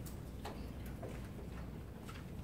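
Quiet room tone with a low steady hum and a few faint, short clicks and taps.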